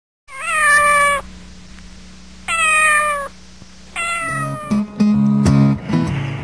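A cat meowing three times, each meow sliding down in pitch. A guitar starts strumming near the end.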